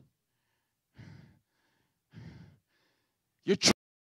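A man's breathing into a handheld microphone held close to his mouth: two audible breaths, each about half a second long and about a second apart, followed by a short spoken word near the end.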